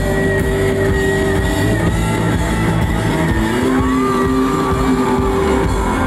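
Live rock band playing loud, with electric guitars holding long notes that slide and bend over bass and drums.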